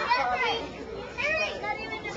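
Children's voices at play: several high-pitched voices calling and chattering over one another.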